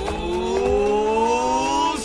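A single pitched sound from an anime fight scene's soundtrack, held and rising slowly in pitch over about two seconds, then cutting off.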